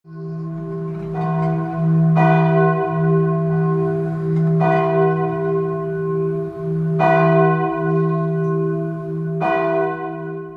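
Church bell tolling: five strikes a couple of seconds apart, each ringing out and fading, over a low hum note that rings on between the strokes.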